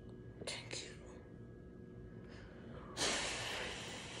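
A young woman's breathy whisper. About three seconds in comes a sudden loud gasp that runs into breathy crying, muffled by her hand over her mouth: an overwhelmed reaction to good news.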